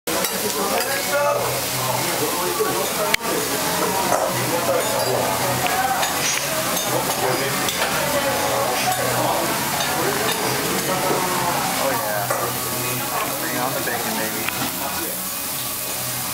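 Cabbage okonomiyaki frying on a large hot steel teppan griddle, sizzling steadily, with a single sharp clack about three seconds in.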